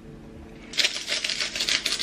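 Handheld seasoning grinder being twisted, a fast crackle of grinding clicks that starts just under a second in.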